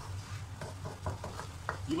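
Ground onion and garlic paste sizzling in hot oil in a wok, with scattered crackles and the scrape of a spatula stirring it, over a low steady hum. The bubbling shows the paste is frying properly.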